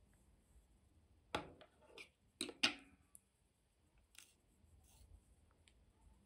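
Small metal embroidery scissors being handled and set down on the tabletop: four sharp clicks in quick succession about a second and a half in, the last the loudest, then one softer click a little past the middle.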